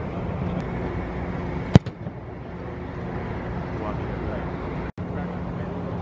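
A single sharp, loud thump about two seconds in: a football being kicked. It sits over a steady low hum inside the air-supported practice dome, and the sound drops out for an instant near five seconds.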